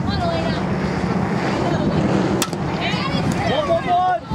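A softball bat hitting a pitched ball: one sharp crack about two and a half seconds in. Voices call out around it, and wind rumbles on the microphone.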